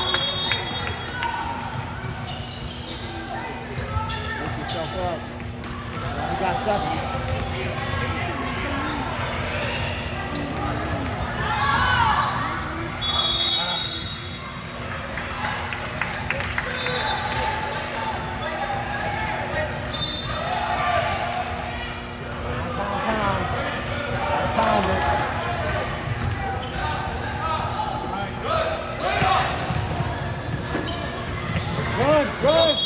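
Basketball bouncing on a hardwood gym court amid the talk and shouts of spectators and players, echoing in a large hall, over a steady low hum.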